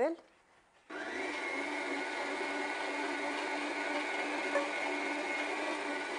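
A Kenwood Major stand mixer's motor switches on about a second in and then runs steadily with a constant pitched hum as it mixes and kneads a yeast dough.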